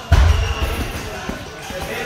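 A single heavy, low thud just after the start, fading over most of a second, amid sparring with boxing gloves.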